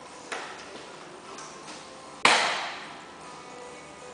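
A single loud bang a little past halfway, trailing off over about half a second, with a lighter click near the start, over a faint steady hum.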